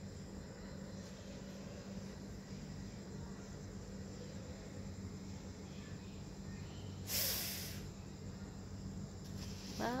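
Quiet night-time background with a steady low hum, and a short hiss about seven seconds in. A voice starts just at the end.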